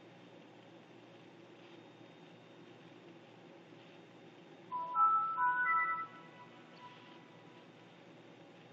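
Windows 7 startup chime playing through the netbook's small built-in speakers as the computer finishes booting: a short run of clear notes stepping upward, lasting about a second and a half, about halfway through.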